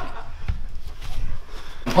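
Low rumble of a handheld camera being swung around, with a soft knock about half a second in and faint voices behind it.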